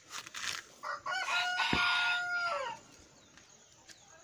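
A couple of brisk strokes of a plastic grooming brush through a horse's mane, then about a second in a rooster crows once, a single call of under two seconds that rises at the start, holds and falls away at the end.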